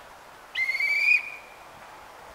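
A single short blast on a railway staff's hand whistle, slightly rising in pitch, about half a second in, given as the departure signal while the train's conductor watches the platform.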